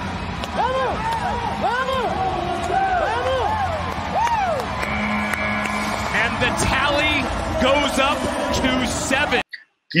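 Bull-riding broadcast audio: voices over arena crowd noise. About five seconds in, a steady horn sounds for just over a second as the ride clock reaches eight seconds, marking a qualified ride.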